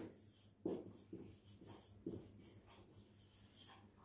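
Marker pen writing on a whiteboard: a handful of faint, short scratching strokes.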